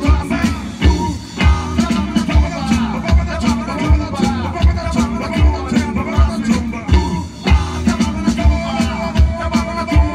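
Live rock band playing: a drum kit drives a steady kick-drum beat under electric guitars and bass, and the beat drops out briefly twice, about a second in and at about seven seconds.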